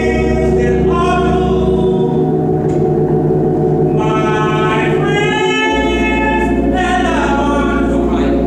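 A small church gospel choir singing, the voices holding long notes in phrases that break and begin again about every three seconds. Held low keyboard notes sound beneath them and change about two seconds in and again near six seconds.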